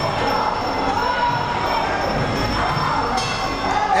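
Muay Thai sarama fight music, with a wavering reed-pipe melody, over crowd shouting and cheering.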